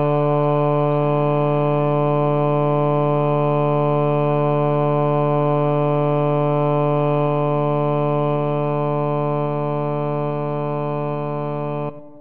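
Computer playback of a four-part choral arrangement in steady, organ-like tones, the top line moving over long held chords with a loud low bass note underneath. The final chord cuts off near the end and dies away.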